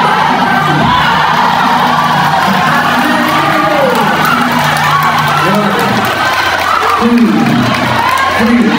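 Arena crowd cheering and shouting over music, reacting to a fighter knocked down.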